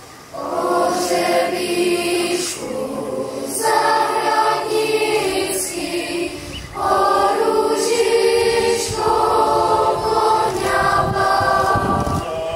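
Children's choir singing in held phrases, with short breaks between them.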